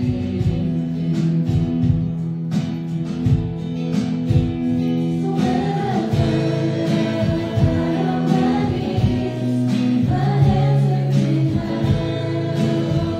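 A worship song with acoustic guitar and a steady beat, with voices singing together in a congregational song.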